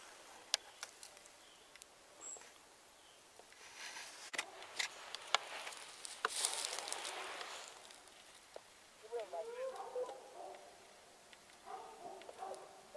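Rustling noise and scattered light clicks, loudest about six seconds in, then a string of dog barks from hunting dogs about nine seconds in.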